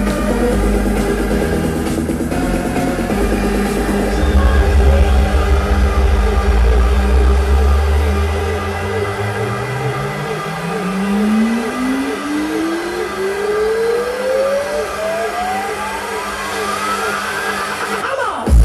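Electronic dance music from a live DJ set over a festival PA, heavy bass in the first half. It gives way to a build-up in which one synth tone sweeps steadily upward in pitch for about nine seconds, then cuts off sharply into the drop at the end.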